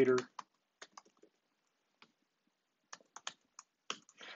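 Computer keyboard typing: scattered single keystrokes, with a quicker run of them near the end.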